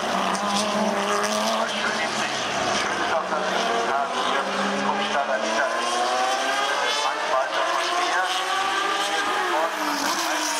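Several historic racing car engines running hard at once, their pitch climbing steadily through the middle of the stretch as they accelerate, then dropping near the end.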